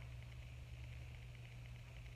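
Faint steady low hum over quiet background noise, with no speech.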